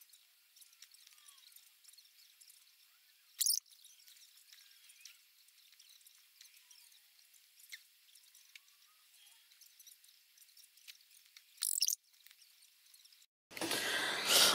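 Faint scratching and light tapping of a stylus drawing on a tablet screen, with two short louder rasps, one about three and a half seconds in and one near the end.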